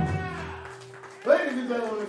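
The last chord of a live rock song on electric guitar and bass rings out and fades, the bass dropping away, while a held guitar note sustains. Just past halfway a man's voice comes in loudly through the PA.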